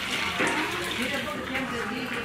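Liquid poured from a plastic bowl into a metal pail, splashing steadily, with people talking in the background.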